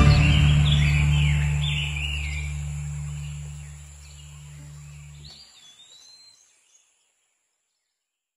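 Birds chirping in short rising-and-falling calls over a low, steady drone that fades and cuts off about five seconds in.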